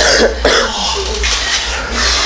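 A man coughing, two short coughs about half a second apart near the start, followed by a steady noisy background.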